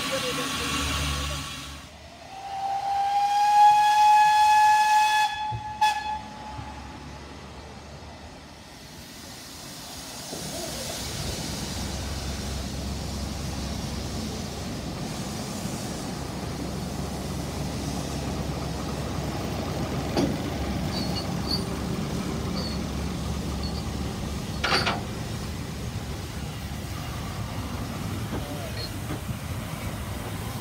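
Steam whistle of Beyer Peacock No. 822 'The Earl' sounding one long steady blast of about three and a half seconds. After a pause, the narrow-gauge train's carriages run along the rails with a steady rumble, with a single knock near the end.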